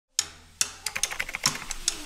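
A fast, irregular run of sharp clicks and ticks. It starts with two single clicks and then speeds up to several a second over a faint hiss.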